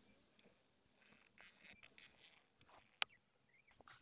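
Near silence, with faint scattered rustles and one short, sharp click about three seconds in.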